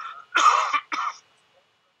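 A person coughs twice in quick succession, clearing their throat: a longer cough followed by a short one.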